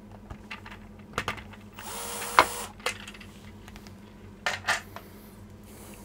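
Cordless drill-driver running briefly, for under a second, to back a screw out of a plastic power strip's casing. Sharp plastic clicks and clatter come before and after it as the casing is handled and opened.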